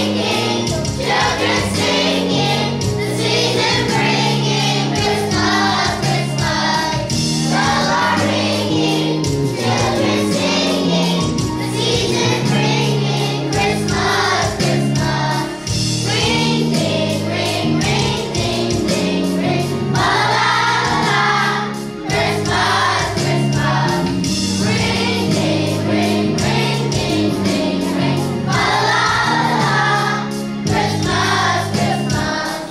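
Children's choir singing in unison with instrumental accompaniment, steady low bass notes changing in a regular pattern beneath the voices.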